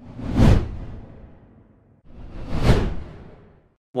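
Two whoosh transition sound effects, each swelling quickly to a peak and then fading away, the first about half a second in and the second a little over two and a half seconds in.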